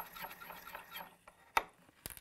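Forster Original case trimmer's 3-in-1 cutter being cranked by hand against a brass case mouth, a faint, uneven scraping as it trims a little more off the case. About a second and a half in comes a single sharp click.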